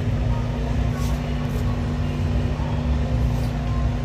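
A steady low rumble with a constant hum underneath, unchanging throughout.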